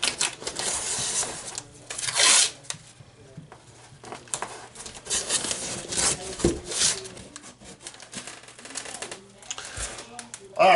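Blue painter's tape being pulled off the roll in short rasping rips and pressed down, with scattered taps and crinkles; the loudest rip comes about two seconds in.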